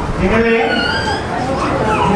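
Speech: a man preaching into a handheld microphone, with drawn-out vocal sounds.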